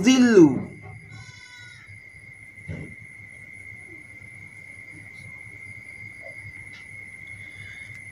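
A man's drawn-out chanted syllable of Quranic recitation, ending within the first second. After it comes a pause holding only a steady high-pitched electronic whine and a faint low hum, with one soft knock about three seconds in.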